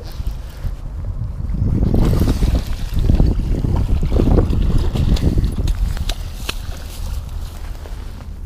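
Wind rumbling on the microphone of a body-worn camera, with rustling handling noise and a few sharp clicks.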